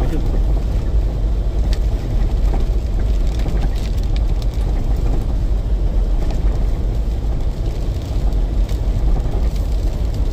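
Steady low rumble of a vehicle driving slowly over a rough, snowy dirt road, heard from inside the cab: engine and tyre noise, with occasional light ticks.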